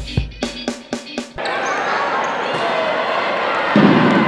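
A rock guitar jingle ends about a second and a half in. Live basketball game sound follows: steady crowd noise echoing in a sports hall, louder near the end.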